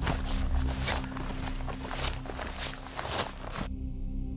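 Footsteps walking through grass, about two steps a second, which stop suddenly near the end, over a low, steady background music drone.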